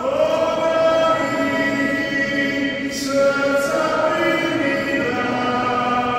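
Congregation singing a slow hymn together in a large church, with long held notes.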